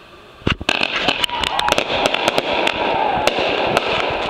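Fireworks going off: a fast, irregular string of sharp bangs and crackles that starts suddenly about half a second in and keeps on.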